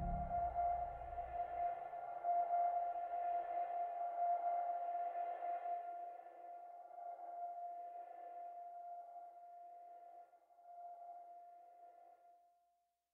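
Closing ambient music ending on one long held ringing tone. The low notes drop out within the first second or two, and the tone slowly fades away.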